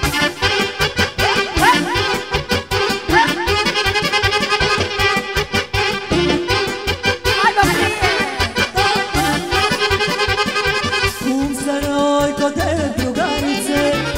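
Live Serbian folk band playing an instrumental passage with the accordion leading in quick runs over a steady, fast dance beat.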